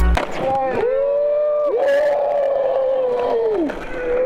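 A young man yelling in two long, drawn-out shouts, the second held for about two seconds and falling away at the end: a celebratory yell for a skateboard trick just landed.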